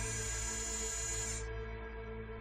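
Ambient documentary background music: sustained, layered chords over a deep low drone, with a high bright layer that drops out about one and a half seconds in.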